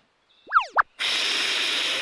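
Cartoon sound effects: a quick springy whistle-like glide that sweeps up, down and up again, then about a second of steady hissing whoosh that cuts off sharply.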